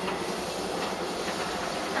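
Steady rustling of cloth rubbing against the microphone of a handheld camera.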